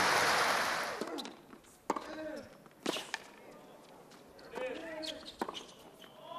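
Applause dies away, then a tennis rally on a hard court: sharp racket-on-ball strikes about two and three seconds in and another near the end, with brief voices between them.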